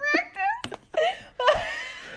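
Adult laughter in a string of short, high-pitched bursts, with one sharp tap about two-thirds of a second in.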